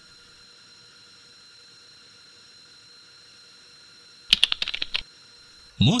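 Faint steady hum with a thin high whine, then, about four seconds in, a short burst of rapid sharp clicks, lasting under a second.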